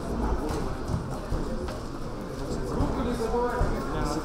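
Voices of coaches and spectators calling out around a boxing ring, over scattered short knocks and thuds from the bout: boxers' feet on the ring canvas and gloves landing.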